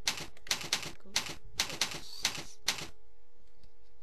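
Computer keyboard being typed on: about a dozen sharp key clacks at an uneven pace over the first three seconds, then the typing stops. A faint steady hum runs underneath.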